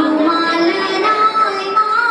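A young woman singing into a handheld microphone, holding one long note through the second half.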